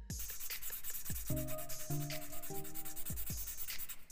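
Fine 600-grit sandpaper rubbing quickly back and forth on a carved balsa wood lure body, stopping near the end, over background music with plucked notes.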